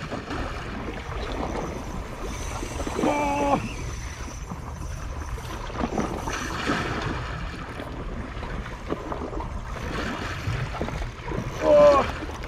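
Sea water lapping and washing against shoreline rocks. A short voiced exclamation at about three seconds and another, louder one just before the end.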